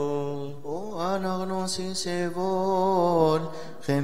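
A male voice chanting Coptic liturgical chant in long, drawn-out notes ornamented with melismatic turns. There is a short pause for breath about half a second in and another near the end.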